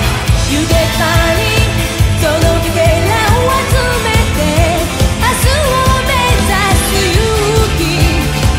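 A woman singing an upbeat Japanese pop-rock song live with a full band, drums beating steadily under the vocal.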